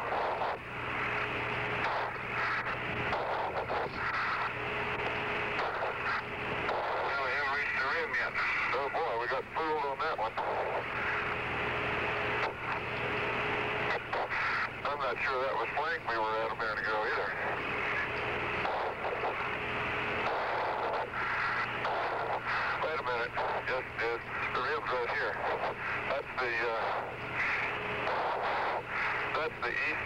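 Apollo 14 air-to-ground radio from the lunar surface: thin, band-limited static with a steady hum, through which the astronauts' garbled voices and hard breathing come and go.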